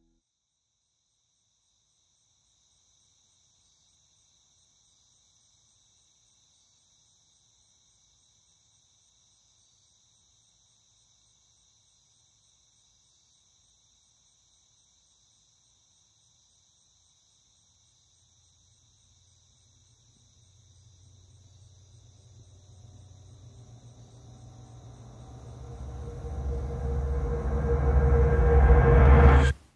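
Faint, steady high-pitched chirring of night crickets. From about two-thirds of the way in, a low rumbling swell rises steadily and grows loud by the end.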